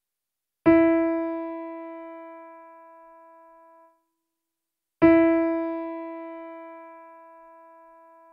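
A single piano note, the E above middle C, struck twice about four seconds apart; each strike rings and fades for about three seconds before being cut off abruptly.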